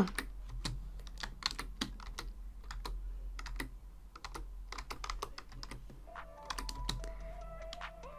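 Computer keyboard typing: an irregular run of key clicks as a word is typed out.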